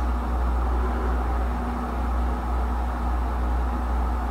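Whirlpool Duet Steam front-load washing machine spinning its drum at 1300 RPM, the maximum spin speed: a steady low rumble with a faint steady hum above it.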